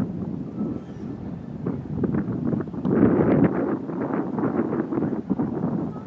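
Wind buffeting the camera microphone in uneven gusts, strongest about halfway through.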